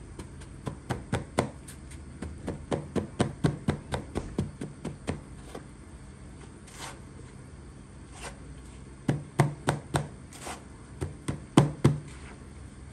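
A hand pressing and patting chicken cutlets into dry breadcrumbs in a plastic bowl, giving a run of quick knocks and taps, about three a second for the first five seconds and again from about nine seconds in. The crumbs are pressed on firmly so the coating stays on.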